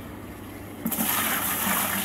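A bucket of water poured into an empty glass aquarium, splashing and gushing onto the tank's bottom, starting suddenly about a second in.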